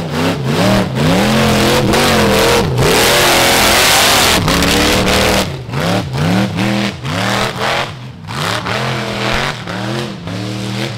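Rock bouncer's engine revving hard in repeated bursts, rising and falling about twice a second as it claws up a steep dirt hill. In the middle it is held at high revs for a couple of seconds under a loud rushing noise of spinning tyres throwing dirt.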